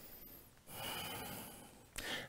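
A man breathing audibly: one long breath of about a second, starting a little past half a second in and fading out before the end.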